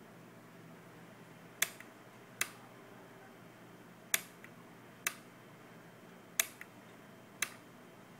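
Toggle switch on a Spektrum DX6i radio transmitter being flipped back and forth, switching the Nova OSD's screen/display mode. Six sharp clicks come about a second apart, some with a fainter second click just after.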